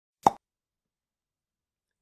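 A single short plop, a sound effect in the animated title graphics, about a quarter second in.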